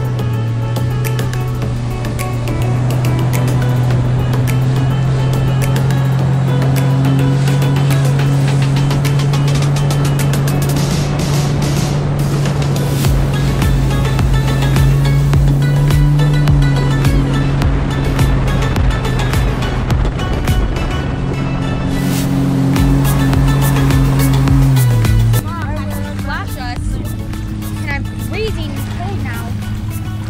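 Background music over the steady drone of a Sea-Doo jet ski's engine running at speed, with water spray and wind. The engine drone ends abruptly about 25 seconds in, and voices follow.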